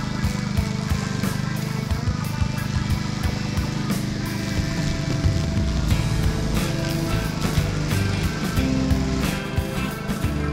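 Walk-behind lawn mower running steadily, under background music with a steady beat.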